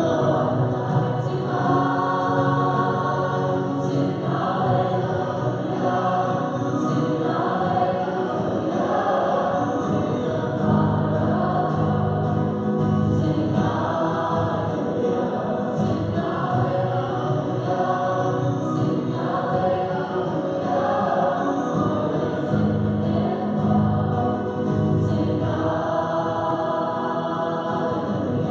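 Choir singing a sacred hymn in parts with instrumental accompaniment, continuous and without pauses.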